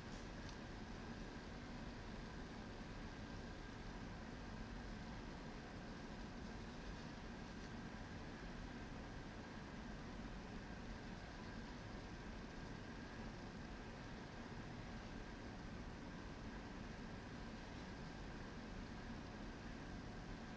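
Quiet steady room tone: an even hiss with a low hum and a faint high steady whine.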